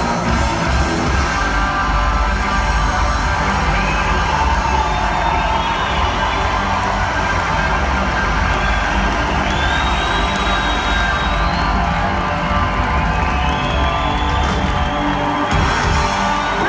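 Live rock band playing loudly, heard from within the audience, with a large crowd cheering and whooping over the music.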